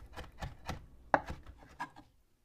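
Chef's knife chopping raw fish fillets on a wooden cutting board: a quick, uneven run of knocks as the fish is finely diced, one stroke louder a little past the middle.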